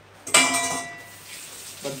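A single clank of metal kitchenware, a pot or pan knocked against something, ringing out for about a second.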